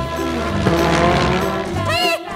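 Children's background music with a cartoon tyre-screech sound effect as an animated bus skids, and a short wavering glide near the end.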